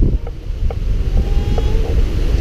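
Wind buffeting the camera microphone in a steady low rumble, over the wash of small waves breaking on the shore.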